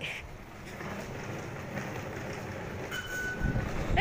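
Low rumble of a metro train moving through the station, growing slightly louder toward the end, with a short electronic fare-gate beep about three seconds in.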